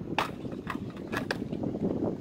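Wind rumbling on the microphone, with a handful of sharp knocks and scuffs, about half a second apart, as a skater and his skateboard climb onto a concrete ramp deck.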